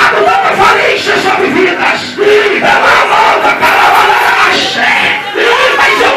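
A church congregation crying out together: many raised voices shouting and calling over one another without a break.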